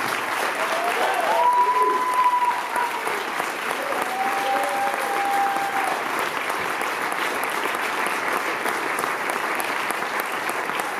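Audience applauding steadily, with some cheering over it in the first six seconds.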